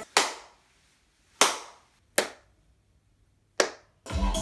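Four single hand claps testing the room's echo. The earlier claps ring on with a longer echo in the bare, untreated room. The later claps die away quickly in the room lined with acoustic panels and bass traps.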